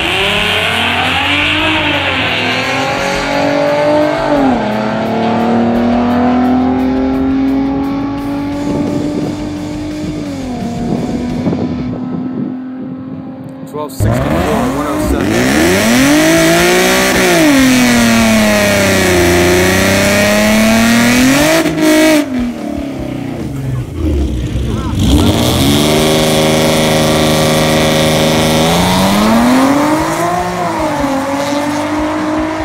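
Ford Mustangs with the 3.7-litre Cyclone V6 making drag-strip passes: one engine pulls hard, its pitch climbing and dropping sharply at a gear shift about four seconds in, then climbing again as the car runs away. After an abrupt cut about 14 s in, a second V6 Mustang revs up and down repeatedly, then holds high revs near the end as it launches.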